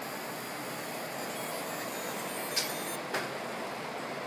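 Steady fan-like whir of a laser engraving station and its surroundings, with two short clicks a little past halfway, about half a second apart.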